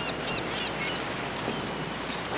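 Steady surf-like rushing ambience, with a few faint high chirps in the first second.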